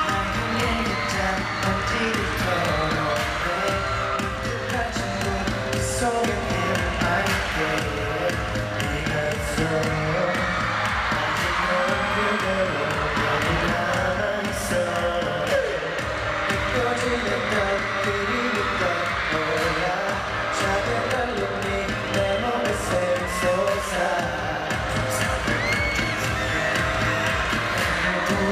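Live pop song heard from the arena floor: several male voices singing over a backing track with a steady beat, with the audience cheering and screaming along.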